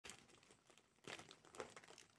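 Faint crinkling of plastic packaging as a torn-open pack of individually wrapped sanitary pads is handled, with brief louder rustles about a second in and again about half a second later.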